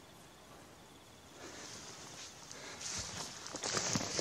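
Rustling and scraping close to the microphone with a few small clicks, starting about a second and a half in and growing louder: handling and movement right beside the camera as a hand reaches toward it.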